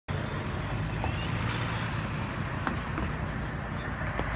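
Volvo XC90 D5's five-cylinder turbodiesel engine idling with a steady low hum.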